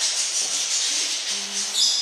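High-pitched rustling, rubbing noise that lasts most of two seconds and fades near the end.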